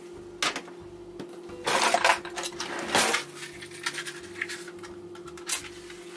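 Stainless steel cooking pot clattering against the metal grate of a gas hob as it is set down, a few sharp metallic clinks with the loudest around two and three seconds in, over a steady hum. A match is struck near the end to light the burner.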